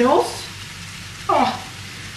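Noodles frying in melted butter in a frying pan, a steady sizzle.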